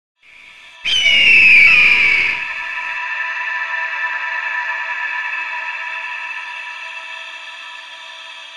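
Animated logo intro sting: a sudden hit about a second in with high tones gliding downward, then a held, ringing chord that slowly fades.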